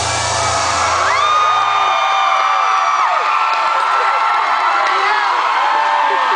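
Live audience cheering and screaming, with long, high-pitched whoops held over the crowd noise. The music's last low note fades out about two seconds in.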